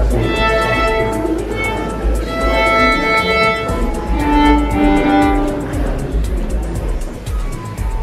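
Solo violin playing a melody of long held notes, some sustained for about a second, with a steady low rumble underneath.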